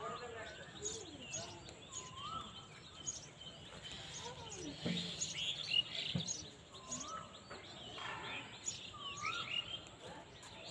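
Several birds singing and chirping, one repeating the same short rising-and-falling phrase three times.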